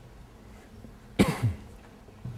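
A person coughing: two quick coughs just past the middle, the first the louder.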